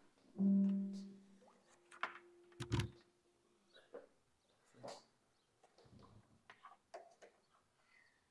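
A short pitched tone from a portable speaker fades within about half a second. About two and a half seconds in, a sharp pop-like knock sounds through the speaker, then a few faint clicks as the microphone's cable plug is pulled out and handled.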